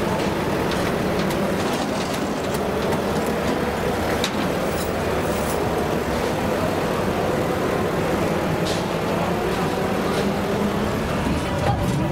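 Steady, continuous motor vehicle engine noise with a low hum running through it.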